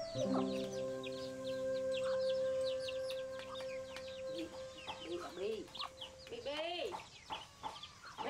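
Farmyard poultry: rapid high peeping from young birds, with chicken clucks coming in about halfway through and a louder rising-and-falling call near the end. Background music with held notes plays under it and stops about six seconds in.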